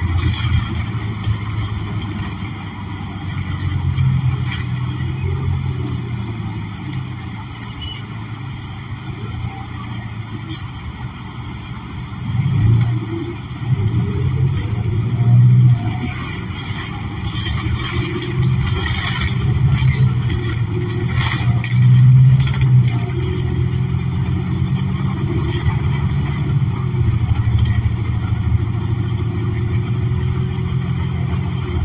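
Interior of a New Flyer XN40 city bus under way: the Cummins Westport L9N natural-gas engine drones low, rising and falling in level with the driving, over road noise, with brief rattles in the cabin about halfway through.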